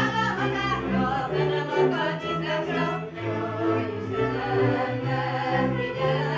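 Two women singing a folk song to a string band of fiddles and double bass, the bass holding long low notes beneath the voices and bowed strings.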